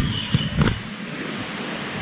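Steady rushing of a small stream running close by. A few handling knocks and a low rumble come in the first second.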